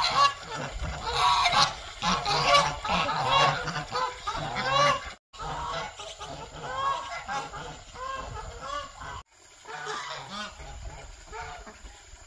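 A flock of domestic ducks and geese calling, a dense run of quacks and honks that overlap one another. The calling breaks off twice for a split second, about five and nine seconds in.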